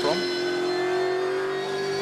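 V8 Supercar race car engine running at steady revs, its note holding nearly one pitch and climbing slightly over the two seconds.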